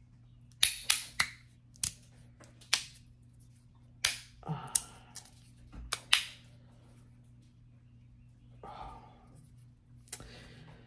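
Blasted-finish Whirl magnetic fidget slider: its plates snap together under very strong magnets, giving about ten sharp, irregular clicks over the first six seconds, a couple coming in quick pairs.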